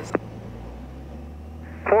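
Light aircraft's piston engine idling, heard as a low steady drone in the cockpit audio between radio calls, with a short click just after the start.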